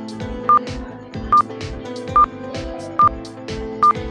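Quiz countdown timer beeps: five short, high, identical beeps, evenly spaced a little under a second apart, counting down the answer time until it runs out. Background music with a steady beat plays under them.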